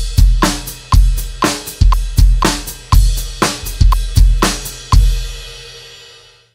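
Drum kit playing a steady groove at 120 beats per minute: bass drum and snare strokes about every half second over cymbal, with the left foot working the hi-hat pedal as a hi-hat independence exercise. The groove stops with a last hit about five seconds in and the cymbals ring out.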